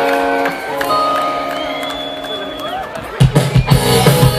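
Live rock band: electric guitar notes ringing out in an intro, with some bending notes, then drums and bass come in loudly a little after three seconds in.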